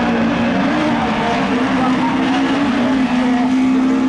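Rallycross car engine running hard at high revs, its pitch holding fairly steady with small rises and dips.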